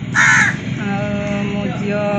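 A crow caws once, a short harsh call about a quarter of a second in, followed by a woman's speaking voice.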